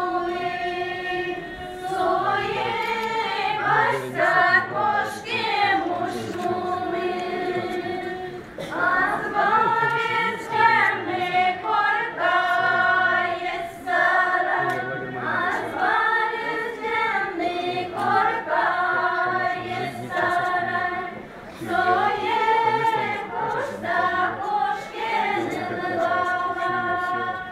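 A group of women's voices singing an Udmurt folk round-dance song together, unaccompanied, in long sung phrases that glide between held notes, with short breaks for breath about every few seconds.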